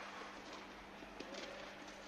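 Steady air hiss with a constant low hum from the blower that keeps an air-supported tennis dome inflated. A faint low call slides in pitch about halfway through, followed by two faint taps.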